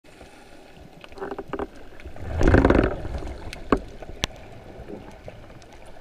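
Water sounds recorded underwater through a camera housing: a loud rushing swish of water in the middle, then a few sharp clicks.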